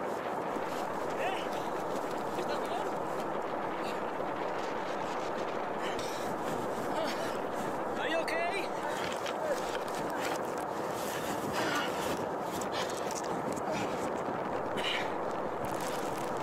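A steady rushing noise, with faint, brief snatches of voice a few times.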